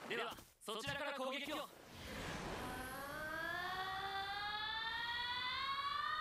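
Anime episode audio: a short line of Japanese dialogue, then a long, steady tone that rises slowly in pitch over several seconds.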